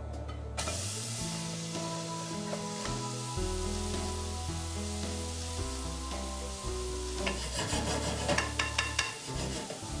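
Chunks of bacon sizzling as they fry in a pan, rendering their fat, with a few short scraping strokes in the second half. Background music with held notes plays underneath.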